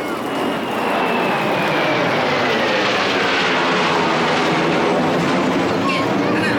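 Kawasaki T-4 jet trainer flying past overhead: a loud jet roar that builds in the first second, with a whine falling steadily in pitch as the aircraft goes by.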